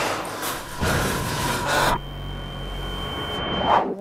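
Eerie drama soundtrack sound design: a rushing noise that stops abruptly about two seconds in, giving way to a low hum with a thin, steady high tone that swells near the end.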